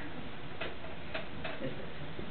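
Quiet room noise with three faint clicks, the last two close together.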